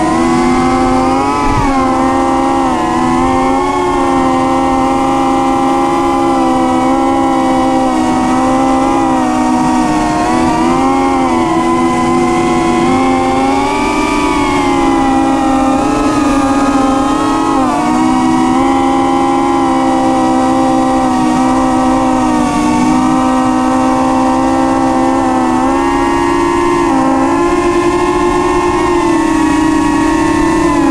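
Kelpie 3 cinewhoop FPV drone in flight, its ducted propellers and motors giving a loud, steady whine heard up close from the camera on board. The pitch wavers up and down with the throttle, dipping briefly several times.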